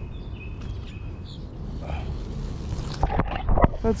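A peacock bass being released into the pond, splashing into the water with a short burst of sharp strokes about three seconds in.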